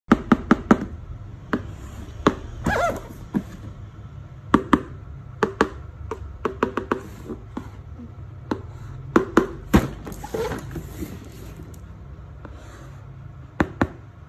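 Hands handling a cardboard box: a string of sharp taps and knocks, with a stretch of scraping where a thin blade cuts through the packing tape.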